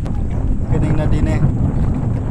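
Steady low rumble of an outrigger boat under way, with wind buffeting the microphone.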